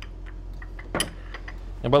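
A metal spoon clinking against cookware: one sharp clink about a second in, with a few lighter taps around it, as butter is spooned into a skillet.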